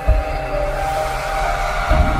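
Background music: sustained synth chords over a low bass rumble, with a deep boom at the start and another near the end.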